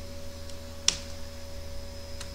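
A single sharp click of a computer key being pressed about a second in, over a steady electrical hum.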